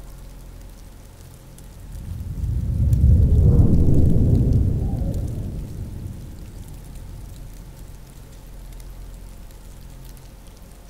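Rain ambience with a deep, rolling rumble of thunder that swells about two seconds in, peaks a second or two later and slowly fades away.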